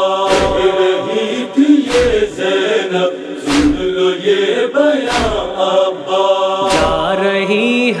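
Noha lament intro: a chorus of voices chanting a drawn-out, wordless refrain over a deep thump about every second and a half.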